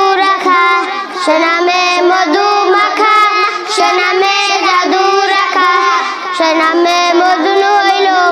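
Young boys singing a Bengali naat, a devotional song praising the Prophet, together in one melody with no break.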